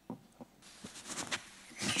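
A few faint clicks and knocks of a handheld microphone being handled as it is raised, then a breath into it just before speech begins near the end.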